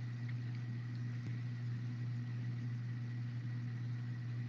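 A steady low hum with a faint even hiss on an open voice-chat audio line, unchanging throughout.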